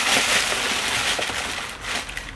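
Packaging rustling and crinkling as a polka-dot Comme des Garçons clutch is pulled out of its wrapping: a continuous papery rustle that eases off near the end.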